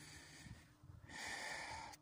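Faint breathing close to the microphone: a soft hiss that fades briefly just before the middle and returns, airier, for the last second.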